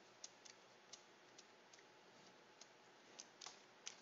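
Near silence broken by about nine faint, irregularly spaced clicks from computer input devices.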